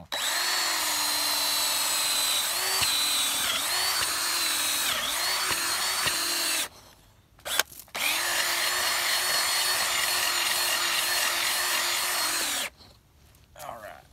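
Power drill turning an earth auger bit into loose sandy soil, its motor whine dipping in pitch several times as the bit bites. It runs for about six and a half seconds and stops, blips briefly, then runs steadily again for about five seconds and stops shortly before the end.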